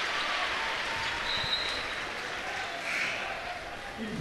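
Gymnasium crowd applauding and cheering, a steady mix of clapping and voices that eases off slowly.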